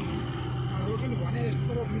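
Bus engine running with a steady low drone, heard from inside the passenger cabin, with passengers' voices over it.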